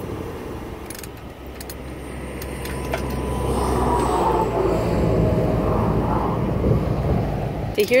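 Highway traffic passing close by on the interstate: a vehicle's rumble builds over several seconds to a peak past the middle and eases slightly near the end.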